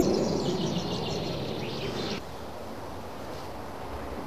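Rapid, repeated high chirping, like birdsong, for about two seconds, which cuts off suddenly; then a low steady hiss.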